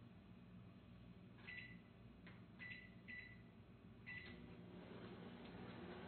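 Microwave oven keypad beeping four times as the cooking time is keyed in. The oven then starts cooking under a heavy load of about 760 W, and a faint steady hum sets in near the end.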